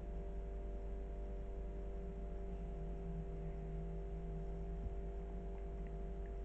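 Steady low hum with a few fixed tones over a low rumble: even room noise with no distinct sound events.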